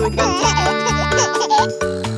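Children's song backing music with a baby giggling over it for about a second and a half.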